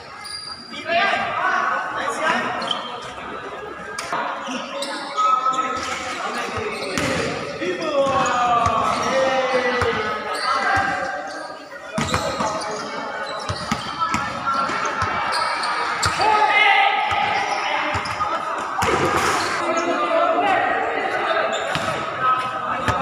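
Basketball game sounds in a large roofed court: players shouting and calling out over the ball bouncing on the hard court floor, with sharp impacts scattered throughout.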